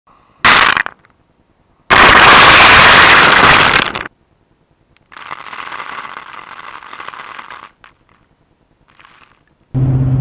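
Shelled corn being dumped onto dry leaves: a brief rattle of kernels, then a longer pour of about two seconds. Then a hand pump sprayer hissing for about two and a half seconds as it sprays the corn pile.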